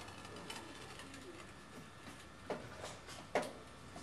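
Tail lift of a box truck beginning to swing open, with two sharp creaking clunks near the end.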